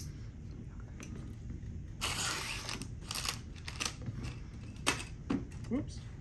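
Plastic miniature sprues being handled and laid out on a table: rustling and light clattering of the plastic frames, with a louder scraping burst about two seconds in and a few sharp clicks.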